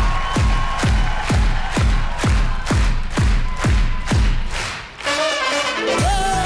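Live band playing up-tempo disco-pop dance music, driven by a steady kick drum on every beat at a little over two beats a second. The beat drops out about five seconds in.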